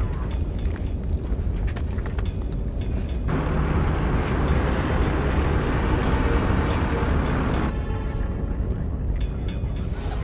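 Film soundtrack: music over the steady drone of a four-engine turboprop transport plane in flight, with a louder rush of engine noise from about three seconds in until nearly eight seconds.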